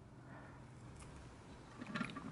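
Quiet handling sounds of a short jumper wire being worked into the push-in speaker terminal of a dual-voice-coil subwoofer, with one faint click about a second in.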